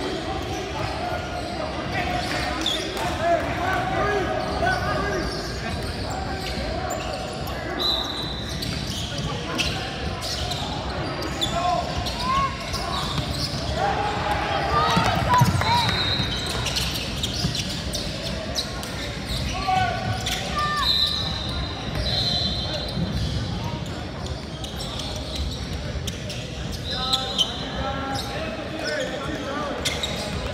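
A basketball dribbling and bouncing on a hardwood gym floor, amid the echoing voices of players and spectators in a large hall. A few short, high-pitched squeaks cut through now and then.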